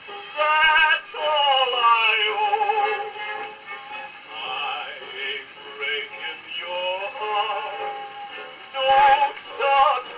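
Portable gramophone playing a shellac record of a male singer with orchestra, the voice held on long notes with a wavering vibrato. The sound is thin, with almost no bass.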